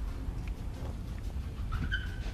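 Wind rumbling on the microphone outdoors, with a short high rising chirp near the end.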